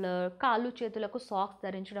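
Only speech: a woman talking in Telugu, with no other sound.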